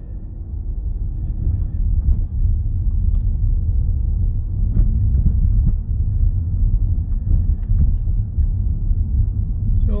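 Low, steady rumble of a car's engine and tyres on the road, heard from inside the moving car. It swells over the first couple of seconds, then holds.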